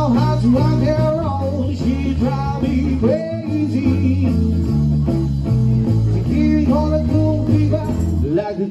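Live band music with guitar over a steady bass line, the melody bending and sliding.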